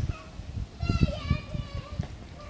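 A child's voice calling out once, a drawn-out, wavering high call about a second in, over repeated low thumps.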